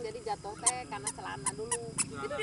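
A young child's high-pitched babbling vocalizations, broken up, with a few short sharp clicks in between.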